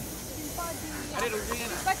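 Several people calling out in short overlapping bursts from about halfway through, over a steady background hiss.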